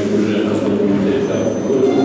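A man speaking at a podium microphone: continuous male speech only.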